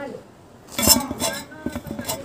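A large knife blade scraping and clinking against a steel plate as ripe mango is sliced, with a burst of clatter a little under a second in and a few more knocks near the end.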